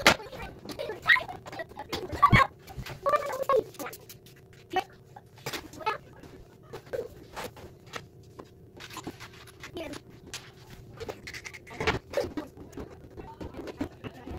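Fast-forwarded assembly noise: quick knocks and clatter of a toy kitchen's wooden panels and parts being handled on a hardwood floor. High-pitched, sped-up voices are heard in the first few seconds.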